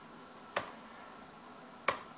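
Two sharp, single clicks about a second and a half apart: keys being tapped on a laptop keyboard, entering a dimension.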